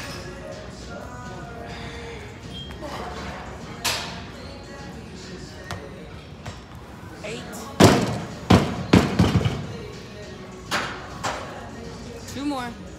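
Loaded barbell with bumper plates dropped from overhead onto the gym floor about eight seconds in, landing with a heavy thud and bouncing a few times as it settles. Gym music and chatter run underneath.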